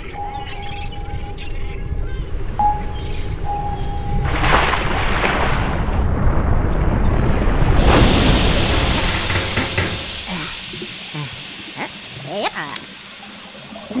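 Cartoon underwater sound effects for a tiny yellow submarine: a steady tone broken twice, then a swelling rush of bubbling water noise that peaks about eight seconds in and gives way to a high hiss that slowly fades.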